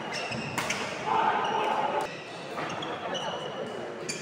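Badminton rally in a large hall: rackets strike the shuttlecock with sharp smacks, about half a second in and again at two seconds, and shoes squeak briefly on the wooden court. A voice calls out between the hits.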